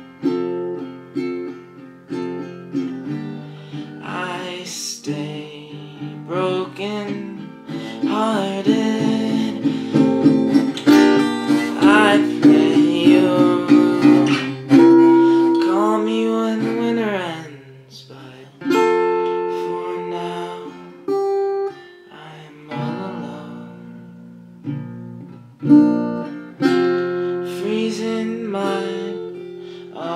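Acoustic guitar fitted with a capo, strummed and picked in chords throughout. A man's voice sings over it, most strongly through the middle stretch.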